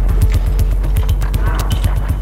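Minimal glitch electronic music: sharp, even clicks and short bass pulses about eight a second over a deep steady bass, with a brief warbling tone rising up in the second half.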